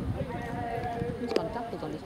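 A horse's hooves thudding on grass turf as it is ridden, with indistinct voices in the background.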